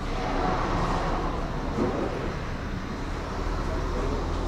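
Road traffic noise: a steady low rumble of passing vehicles.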